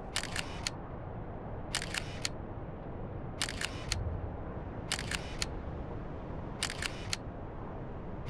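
Quick bursts of three or four sharp mechanical clicks, repeating about every second and a half over a low steady rumble.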